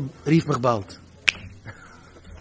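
A man's lecturing voice for under a second, then a single sharp click just over a second in, like a finger snap.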